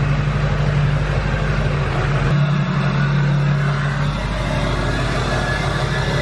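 Chevrolet Silverado 2500HD's Duramax turbo-diesel V8 running at idle, a steady low drone. The sound changes abruptly a little over two seconds in.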